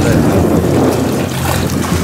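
Steady low rumble of wind on the microphone, mixed with water moving along the hull of a sailing yacht under way. A few spoken words sit at the very start.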